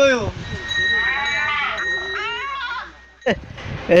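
Goat bleating, three wavering calls one after another, the middle one the longest, followed near the end by a single click.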